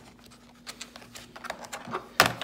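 Light, irregular clicks and taps of hard plastic and metal as a T-handle screwdriver is handled in its moulded plastic bit case.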